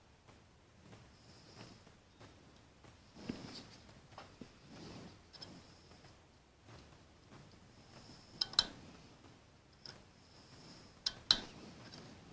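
Quiet handling sounds of gloved hands working a metal timing pointer against the crankshaft pulley of a bare engine block: faint rustles and soft knocks, with two sharp clicks in the last few seconds.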